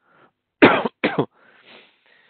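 A man coughs twice, about half a second apart.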